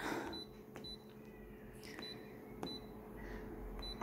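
An office copier's touchscreen gives a few short, faint high beeps and light taps as its on-screen setting buttons are pressed. A faint steady hum runs underneath.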